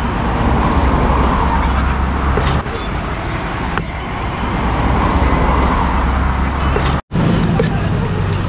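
Steady road traffic noise with a heavy low rumble, swelling twice as vehicles pass by. The sound cuts out for an instant about seven seconds in.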